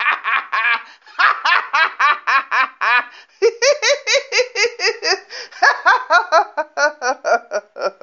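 A person laughing hard in a long run of quick, high-pitched ha-ha bursts, about five a second, catching breath briefly about three seconds in before carrying on.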